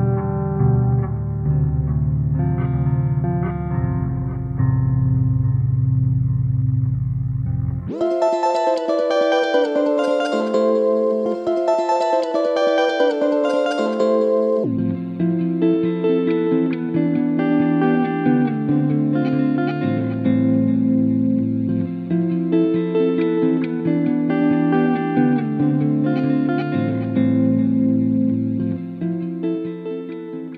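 Guitar loop playing back from a Strymon Volante's Sound On Sound looper while its speed is switched. It runs low and slowed, half speed, for the first few seconds, jumps up an octave to double speed about eight seconds in, then drops back to normal speed and pitch around fifteen seconds. It fades near the end.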